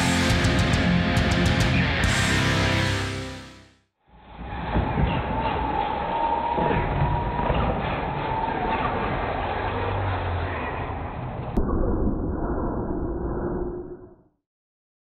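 A short heavy rock guitar music stinger lasting about three and a half seconds. After a brief gap comes a muffled, low-pitched whirring with a wavering tone, which becomes duller still near the end: the slowed-down sound of electric R/C monster trucks racing, played under a slow-motion replay.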